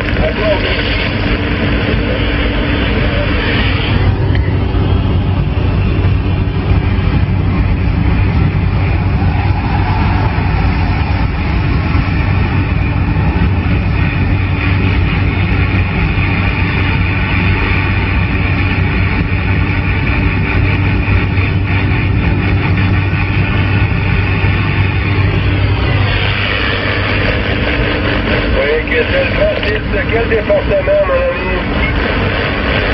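CB radio receiver on the 27 MHz band giving out steady hiss and static, with faint, unintelligible voices of distant stations buried in the noise, as on a long-distance skip contact. A steady low hum runs underneath.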